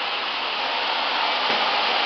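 Steady rushing noise of a motor-driven machine running on a job site, even and unbroken, with a faint click about a second and a half in.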